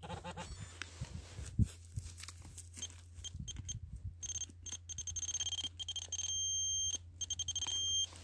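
Handheld metal-detecting pinpointer probed through loose soil: after a few seconds of soil scraping it starts giving high beeps that come faster and merge into one steady tone, then break back into quick beeps, the sign that its tip is closing on a buried metal object.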